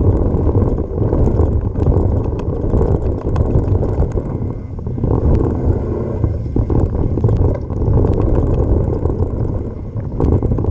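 Wind buffeting an action-camera microphone together with the rumble of mountain bike tyres on a dry dirt trail at speed, with small clicks and rattles from the bike and loose stones.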